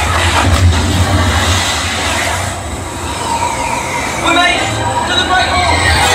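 Onboard dark-ride audio: a steady deep rumble under a loud wash of effects, with brief voices breaking through about four seconds in.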